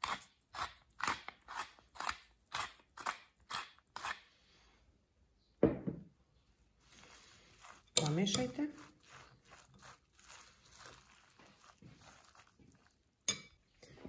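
A metal spoon stirring wet grated zucchini in a glass bowl, with crunchy, squelching strokes about twice a second for the first four seconds. After that the mixing goes on more softly and unevenly.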